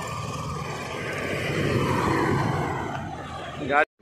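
Road traffic on a highway: the engine and tyre noise of passing vehicles swells about halfway through and then fades. A brief voice comes just before the sound cuts off suddenly near the end.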